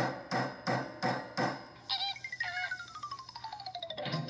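Hammer sound effect tapping a nail in, five quick strikes, followed by a long falling tone with a fast ticking pulse and a couple of short ringing notes, played through a TV's speaker.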